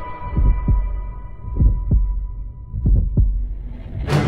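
Heartbeat sound effect: three double thumps, lub-dub, about a second and a quarter apart, over a thin steady high tone. A rising hiss swells near the end.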